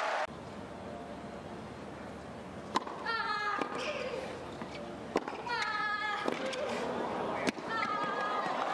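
A tennis serve and rally: sharp racket strikes on the ball about every two and a half seconds, each followed by a player's short high-pitched grunt. Crowd applause cuts off just after the start.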